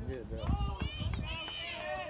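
Several high-pitched voices of spectators calling out and chattering, too far off or overlapping to make out words, over a low rumble that fades about one and a half seconds in.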